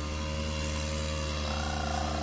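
Lawn mower engine running steadily at constant speed, a continuous drone.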